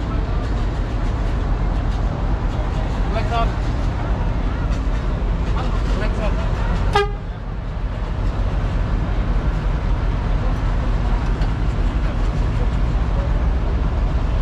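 A tour bus's diesel engine idling steadily with a low rumble, and a single sharp click about seven seconds in.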